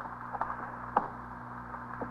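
A pause in an old radio broadcast recording: steady low hum and hiss, with a few faint clicks, the sharpest about a second in.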